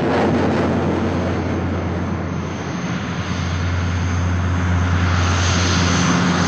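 Twin-engine turboprop aircraft flying low on approach, a steady deep propeller drone that swells a little louder toward the end.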